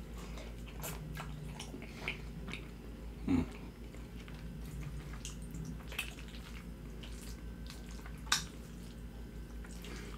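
Close-up chewing of a mouthful of chicken alfredo pasta: soft, wet mouth clicks and smacks scattered through, with a few louder ones about two, three and eight seconds in, over a steady low hum.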